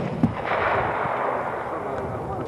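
The rolling echo of a .308 SIG-Sauer SSG 3000 rifle shot, a noisy rumble that swells about half a second in and slowly dies away, with a short click right at the start.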